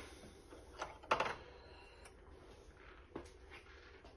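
Faint clicks and taps of hands handling the thread at the top of an embroidery machine, which stands stopped for a thread colour change: a couple about a second in and another near three seconds, over a low steady hum.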